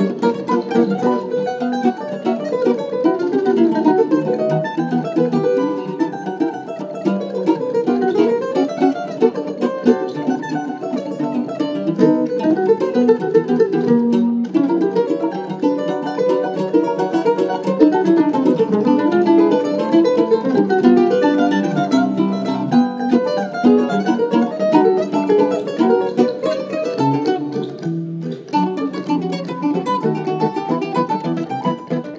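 A ten-string bandolim and a cavaquinho playing an instrumental duet together, with quickly changing plucked notes throughout.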